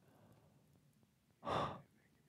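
A man sighing once: a short, sharp breath out about one and a half seconds in, against a faint background.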